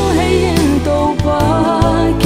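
A woman sings a Paite gospel song with a wavering vibrato on held notes, over a backing track of steady sustained bass and keyboard-like chords.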